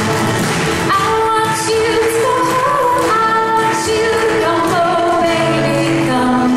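Irish folk song performed live: a woman singing a melody over acoustic guitar strumming, fiddle and bodhrán, in a steady, continuous flow.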